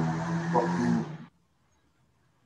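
A man's long, steady hummed "mm", held at one pitch, cutting off abruptly just over a second in, heard over a video-call line.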